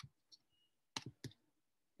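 Near silence, broken by a few faint, short clicks spread over the two seconds.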